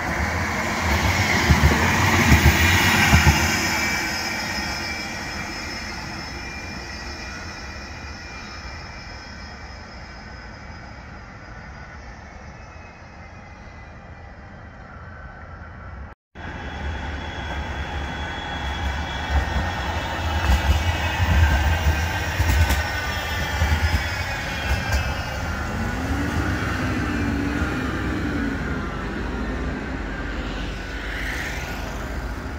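Bombardier Flexity M5000 tram running past close by, loudest in the first few seconds and fading as it moves away. After a sudden break, road traffic passes while another tram approaches, with a passing vehicle's engine rising and falling near the end.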